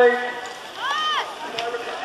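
A single high-pitched shout, its pitch rising and falling, about a second in. It is most likely a spectator calling out to the BMX riders, heard over faint crowd noise.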